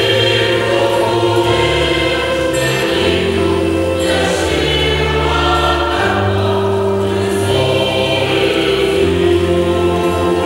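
A church choir singing with instrumental accompaniment: sustained, held chords over a low bass line that steps to a new note every second or two.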